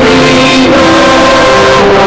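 Church choir and congregation singing a hymn with instrumental accompaniment, in long held notes.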